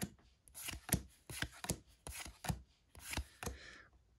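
Pokémon trading cards being flipped through in the hand, each card sliding off the stack with a quick swish and a crisp snap, repeated several times.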